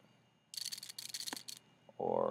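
Computer mouse being worked at a desk: a burst of fine rapid clicking lasting about a second, with one sharper click near its end.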